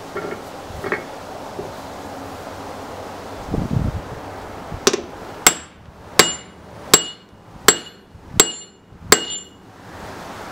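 Seven sharp, ringing steel-on-steel hammer strikes, evenly spaced a little under a second apart, as a wooden handle is driven into a freshly forged hammer head resting on the anvil. A few softer knocks and a dull thump come before them.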